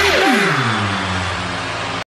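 Animated-battle sound effect: a loud rushing noise with tones sweeping steeply downward in pitch, settling into a low steady hum.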